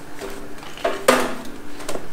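Handling noise of gear on a steel welding table: a few clinks and knocks of metal, the loudest a sharp knock about a second in with a brief ring after it. No welding arc is running yet.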